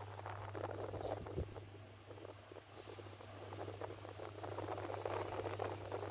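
Vintage Toshiba stand fan with a cast-iron base running on speed 1: a steady low motor hum with faint air noise and scattered light ticks.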